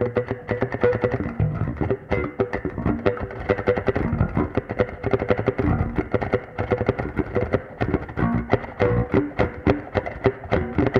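Solo semi-hollow Fender electric bass guitar played as a fast run of plucked notes, several a second, over held notes that keep ringing beneath them.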